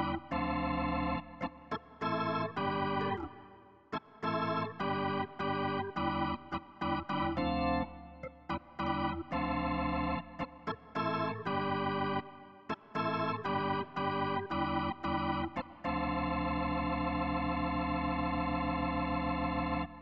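Sampled B2/B3 hybrid Hammond organ played through a Leslie cabinet, with drawbars pulled from the deepest bass up to very high octaves, giving full, wide-spanning chords. It plays a run of chords with short gaps between them, then one long chord held for the last few seconds that cuts off suddenly, with a dirty studio reverb on it.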